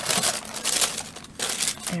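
Paper packaging crinkling and rustling in irregular bursts as it is handled and pulled open inside a gift box.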